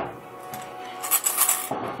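Quarters clinking against each other and a bowl: a sharp click at the start, then a quick cluster of metallic clinks in the second half.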